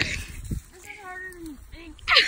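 A low thump at the start and another about half a second in, then a short whining, meow-like call that dips and bends in pitch.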